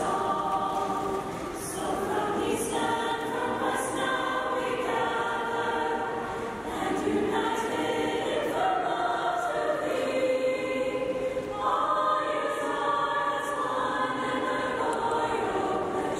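A choir singing slow, sustained chords, the harmony shifting every few seconds.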